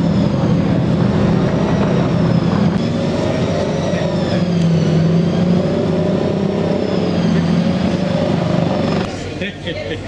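A steady engine drone whose pitch wavers slowly up and down, over background voices; it drops away abruptly about nine seconds in.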